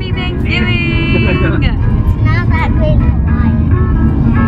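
Steady low rumble of car road noise inside the cabin, with girls' high voices calling out over it, one drawn-out call about half a second in.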